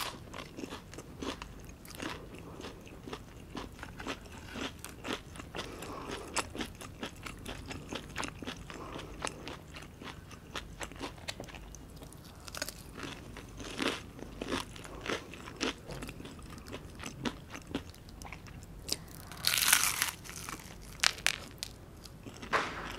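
Close-miked biting and chewing of crumb-coated, deep-fried mozzarella onion rings: a steady run of crisp crunches from the breading. The loudest crunch, a big bite lasting about half a second, comes near the end.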